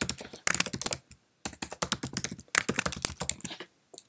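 Typing on a computer keyboard: quick runs of key clicks in a few short bursts with brief pauses between.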